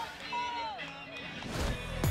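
Excited, falling whoops and shouts from players celebrating a score, then an electronic dance track with a steady heavy beat starting near the end.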